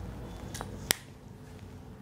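Quiet room tone with a faint tap about half a second in, then a single sharp click just under a second in.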